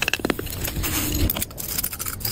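A stick scraping and tapping against sand and a freshly cast metal piece in a sand mould: an irregular run of light clicks and clinks.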